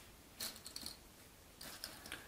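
Glossy cardboard jigsaw puzzle pieces clicking and rustling against each other as they are picked from the box and laid on a wooden table, in two short clusters of small clicks, about half a second in and near the end.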